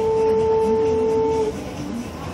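A vehicle horn held on one steady note, which cuts off abruptly about one and a half seconds in.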